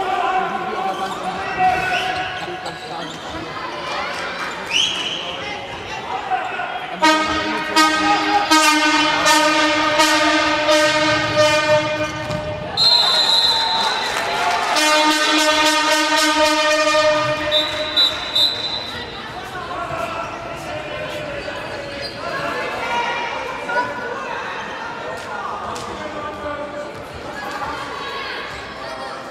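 A loud horn sounded in the sports hall, held for about six seconds and then again for about three, over rapid sharp knocks. Between the two blasts comes a short shrill tone. Crowd voices and a handball bouncing on the hall floor run around it.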